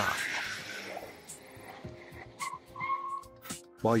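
Sound effect of car tyres skidding while braking hard on a wet road: a hiss that fades out over about two seconds. Background music with held notes follows.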